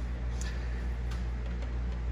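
A steady low hum with a few faint light ticks.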